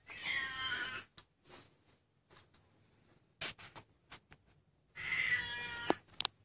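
A cat meowing twice: two drawn-out, wavering calls of about a second each, one at the start and one near the end, with a few light clicks and knocks between.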